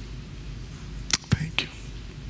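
A person's mouth close to a headset microphone: three quick lip or tongue clicks about a second in, with a brief low hum between them.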